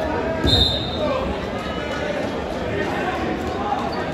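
Crowd chatter in a large echoing gymnasium. About half a second in come a couple of low thuds and a short high-pitched note.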